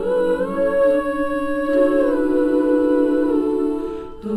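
Girls' a cappella choir singing wordless, humming-style sustained chords in close harmony, the chord shifting every second or so, with a short break right at the end.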